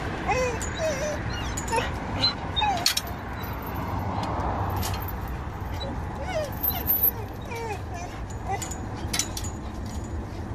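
Dogs whining and whimpering in short cries that rise and fall in pitch, excited greeting sounds at seeing a familiar person again after a long absence. A few sharp clicks come in between the cries.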